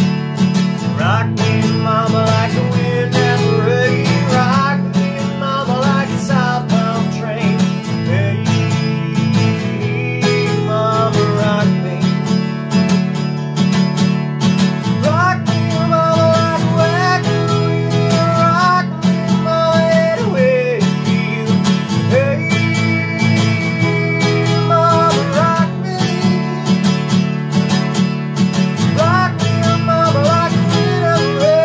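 Steel-string acoustic guitar strummed steadily in a country rhythm through an instrumental break, with a wordless sung melody sliding over it in phrases.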